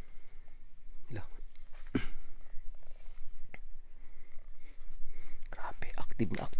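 A steady, high-pitched night insect chorus, with a few short sharp knocks or scuffs spread through the first four seconds. A man's low voice starts near the end.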